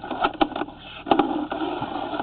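A drain inspection camera's push cable being pulled back fast through the pipe: uneven rattling and scraping with a few sharp knocks, the loudest just over a second in.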